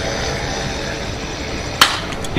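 A baseball bat striking a pitched ball: one sharp crack near the end, over a low, steady background murmur.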